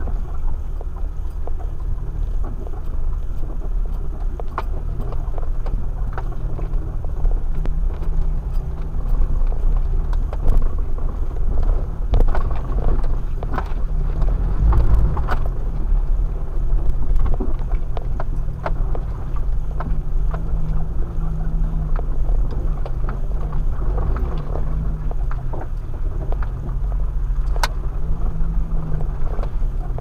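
Jeep driving a rough, muddy dirt trail, heard from inside the cab: a steady low engine and drivetrain rumble, with frequent irregular knocks and rattles as it bumps over ruts and potholes.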